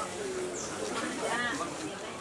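Indistinct background chatter of several people talking at once, no single voice standing out.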